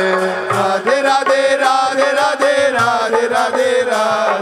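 Devotional bhajan music: a melodic chant with harmonic accompaniment over a steady percussion beat.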